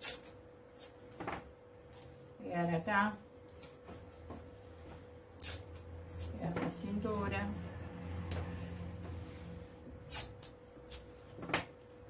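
Roll of masking tape being handled, pulled and torn: a series of sharp clicks and crackles, with a longer low rasping stretch in the middle.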